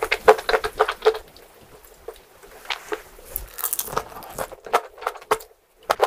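Close-miked chewing of a mouthful of rice: runs of short mouth clicks and smacks, densest in the first second, thinning out later, with a brief pause near the end.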